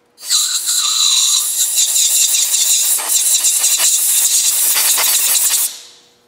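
Compressed-air blow gun blasting a loud, steady hiss of air that starts abruptly and cuts off just before the end, blowing dirt off hydraulic hose fittings.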